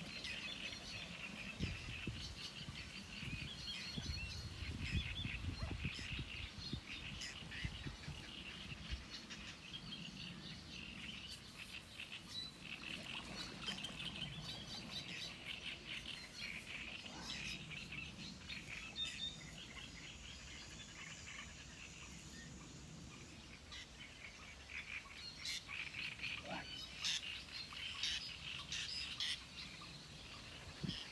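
Small birds chirping and calling continuously, many short high chirps overlapping in a steady chorus. A low rumble sits under them for the first several seconds.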